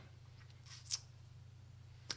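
Quiet room tone with a steady low hum, and one brief faint scratchy hiss about a second in.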